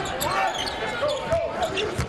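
Basketball dribbled on a hardwood court, a run of short bounces over the steady noise of an arena crowd.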